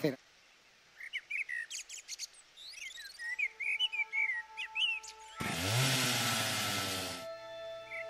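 Birds chirping, with a soft held music chord coming in underneath. About five and a half seconds in, a loud, harsh, buzzing burst lasts about two seconds and cuts off suddenly, leaving the held tones.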